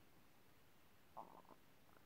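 Near silence: room tone, with one brief faint sound a little over a second in.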